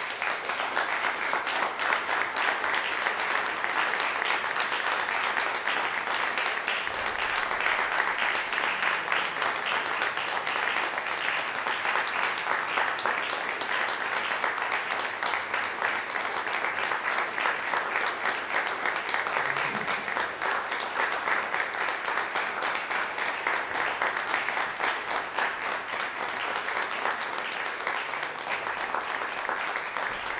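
Audience applauding, breaking out suddenly out of silence and going on steadily, easing a little near the end.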